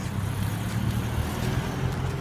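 A motor vehicle's engine running close by, a steady low rumble.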